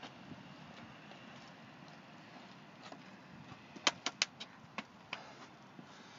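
Faint steady outdoor background noise, with a quick run of about half a dozen sharp clicks or taps starting about four seconds in.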